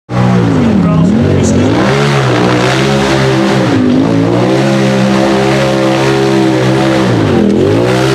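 Rock buggy's engine revving hard under load as it climbs a steep rocky slope. The pitch drops and rises again several times as the driver lifts off and gets back on the throttle.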